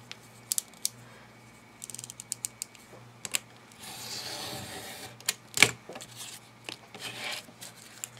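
Yellow snap-off craft knife: a quick run of clicks as the blade is pushed out, then a hiss of about a second as the blade is drawn through paper along a steel ruler. Small taps and one sharper knock of the knife and ruler against the cutting mat.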